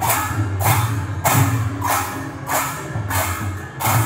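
Kirtan percussion: large hand cymbals clashing in a steady beat, about seven strokes a little over half a second apart, over barrel-shaped hand drums played beneath.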